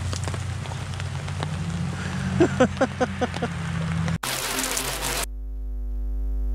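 Steady rain falling on wet leaf litter and a waterproof action camera. About four seconds in it cuts off abruptly for a logo sting: a whooshing rush of noise, then a held synth chord.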